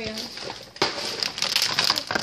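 Plastic bags and candy packaging rustling and crinkling in irregular bursts as the pile of items is pushed aside by hand.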